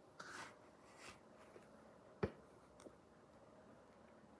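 Quiet mouth sounds of a boy chewing pizza: a short breathy rustle just after the start, a softer one about a second in, and one sharp click a little past halfway.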